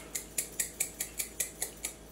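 A small jar of red chili flakes being shaken over a bowl: quick, even rattling taps, about four or five a second.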